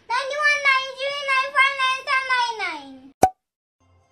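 A young boy rapidly reciting numbers in a sing-song voice, his pitch falling at the end of the run. A single sharp click follows about three seconds in.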